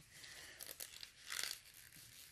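Faint crinkling and rustling handling noise, with a louder rustle about one and a half seconds in.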